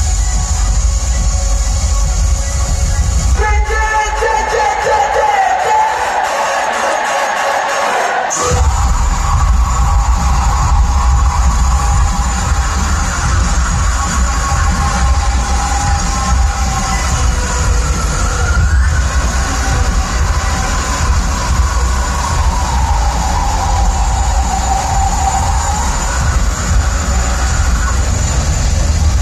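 Live heavy rock band with electronic backing, played at high volume through an arena PA and heard from among the crowd. About three seconds in, the drums and bass drop away, leaving a melodic line over the synths. About eight seconds in, the full band crashes back in.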